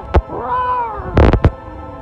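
A short, high-pitched wordless vocal sound that rises and falls once, like a meow, over steady background music. A sharp, loud noisy double burst follows about a second in.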